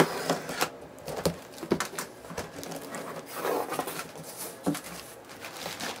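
Packing tape being slit with a blade along the top of a cardboard box, then the cardboard flaps opened and a plastic bag handled, with scattered scrapes, knocks and crinkles.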